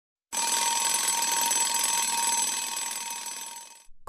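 Bell alarm clock ringing steadily. It starts just after the beginning and fades out over the last second or so.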